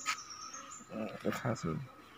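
A few faint spoken syllables about a second in, over a faint steady high tone, with a light click at the start.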